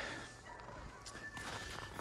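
Faint footsteps on snow.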